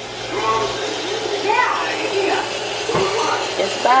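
Kitchen sink faucet running steadily, its stream of water splashing into the sink beside a baby bath cushion, with a short knock about three seconds in.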